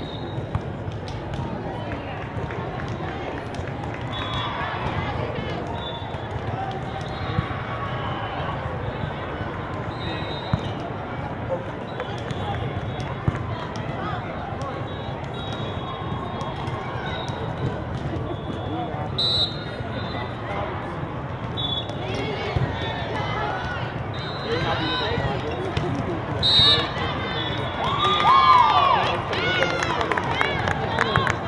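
Indoor volleyball game: a steady hubbub of voices in a large hall, with the knocks of the ball being played. It grows louder near the end with shouts as a point is won.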